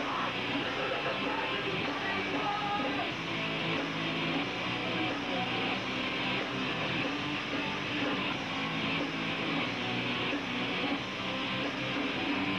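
Live hardcore band playing: electric guitar with drums and cymbals.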